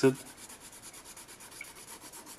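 Prismacolor coloured pencil shading back and forth on Strathmore Bristol paper: a steady soft scratching. The pencil is worked with light pressure, laying a first layer of colour that will be blended over later.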